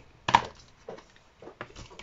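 Clear plastic stamp-set case handled and opened on a desk. There is one sharp clack about a third of a second in, then a few lighter clicks.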